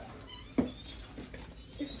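A baby's sudden short cry about half a second in, fading away, as she gets a vaccination shot.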